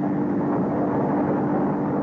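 Sound effect of a car driving: a steady engine drone with road noise, holding an even pitch throughout.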